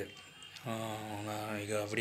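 A man's voice holding one long drawn-out vowel at a steady low pitch, beginning about two-thirds of a second in and held for over a second.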